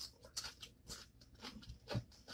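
Faint chewing and biting: a few soft crunches and clicks from a mouth eating.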